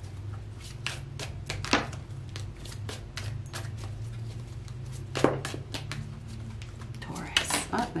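A deck of oracle cards being shuffled by hand: a run of light clicks and snaps as the cards riffle and slap together, with sharper snaps about two seconds in and about five seconds in. A low steady hum runs underneath.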